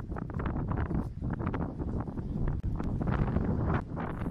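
Wind buffeting the microphone outdoors: a loud, uneven low rumble with irregular gusts.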